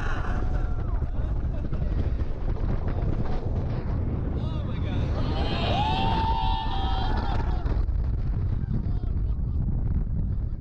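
Heavy wind buffeting an action camera's microphone on a moving roller coaster, with riders screaming over it; one long scream runs from about halfway in to near the end.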